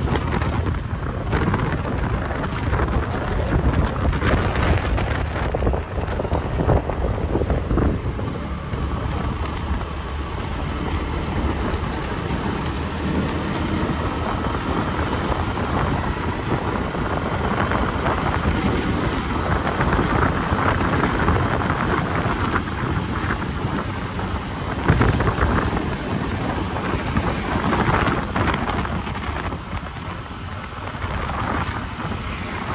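Wind rushing and buffeting over the microphone of a Honda Wave 110 motorcycle riding along a road, with the bike's engine and road noise underneath.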